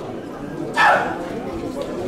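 Murmur of talk in a large room, cut by one short, loud cry that falls steeply in pitch a little under a second in.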